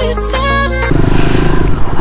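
Background music for about the first second, then an abrupt change to a motorcycle running, heard over a rushing noise.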